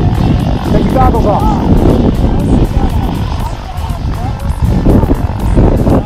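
Background music with a steady low rumble of wind buffeting the camera's microphone.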